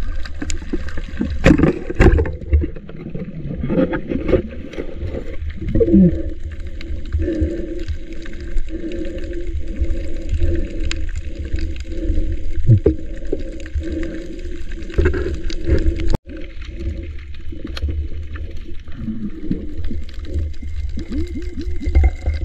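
Muffled underwater sound through a submerged camera: a steady low rumble of moving water with bubbling and gurgling as the diver swims, and a few sharp knocks about one and two seconds in.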